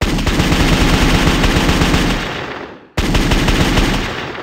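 Automatic gunfire sound effect in two bursts of rapid shots. The first starts suddenly and begins fading after about two seconds. It cuts off just before three seconds in, and a second burst starts at once and then fades out.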